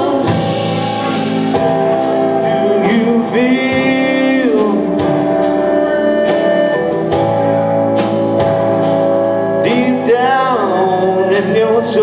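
Live rock band playing: an electric guitar lead with sustained, bent notes over a steady drum beat and strummed rhythm guitar.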